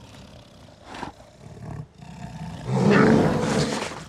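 Bear growling: quieter low grumbles in the first two seconds, then a loud, low growl lasting about a second near the end.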